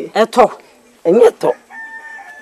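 A rooster crowing: one long, level-pitched call that begins near the end, after a few brief spoken syllables.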